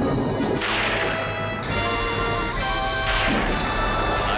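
Cartoon magic-lightning sound effect: a series of sharp crashes about a second apart, like thunderclaps, over sustained music tones, marking a superhero's transformation.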